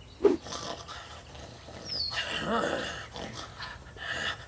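A guttural, zombie-like vocal snarl from the walker, lasting about a second and a half and starting about two seconds in.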